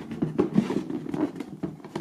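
Cardboard box being handled and its lid worked loose: a run of small, irregular taps and scrapes of hands on cardboard.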